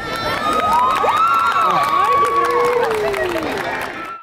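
A crowd cheering and whooping, with many high rising-and-falling shouts overlapping and some clapping. It dies down toward the end.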